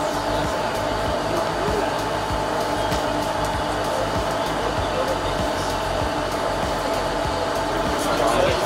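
A steady, even noise, with a few faint clicks scattered through it.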